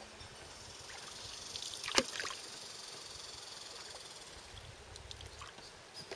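A paddle working the water beside a canoe, with faint trickling and sloshing. About two seconds in there is one sharp knock, the loudest sound.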